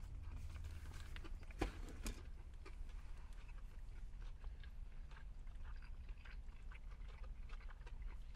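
People chewing fried chicken sandwich and nuggets with their mouths close to the microphone, with small wet clicks and crackles throughout. A sharp click about one and a half seconds in is the loudest sound, over a steady low rumble.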